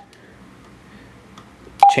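A single short key beep from the Juentai JT-6188 mobile radio as a front-panel button is pressed near the end, after a faint click.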